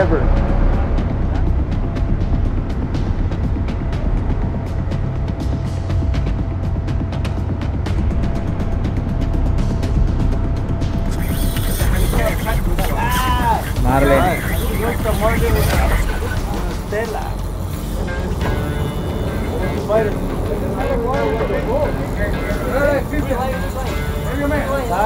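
Steady low rumble of a sportfishing boat under way, its engines and wind on the microphone. About halfway through the sound changes, with hiss rising and voices and music coming in over the rumble.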